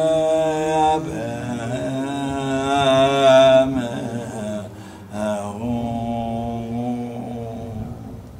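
A man's voice chanting a Tibetan Buddhist prayer into a microphone in long, held, wavering tones, with a brief pause about halfway through.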